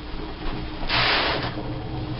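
A brief sliding scrape lasting about half a second, about a second in, as something is handled or slid across a surface off-camera.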